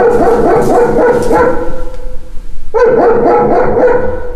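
A German shepherd barking nonstop behind a closed apartment door, with a steady whining tone held under the barks. The barking eases briefly a little past the middle, then comes back.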